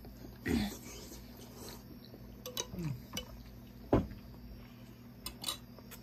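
Close-up eating sounds: wet chewing and lip smacks with several sharp clicks of spoons and mouths, and two short mouth sounds with a falling pitch, about half a second and four seconds in. A faint steady low hum lies underneath.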